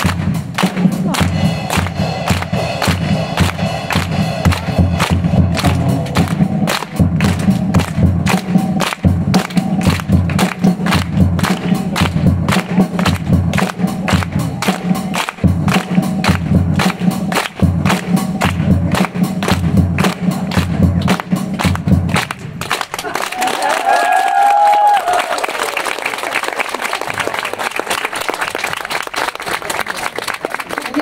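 Maxtone drum kit played in a steady, fast beat with bass drum and stick hits, which stops about two-thirds of the way through and gives way to audience clapping and cheering.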